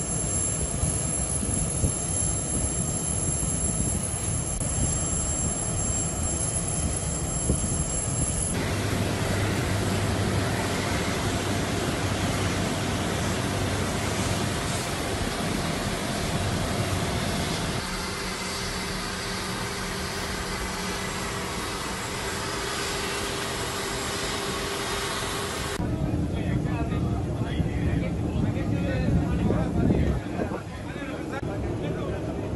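Jet aircraft running on an airport apron, heard in several cuts: a steady engine whine and hum, a louder, even rush of engine noise in the middle, and people's voices near the end.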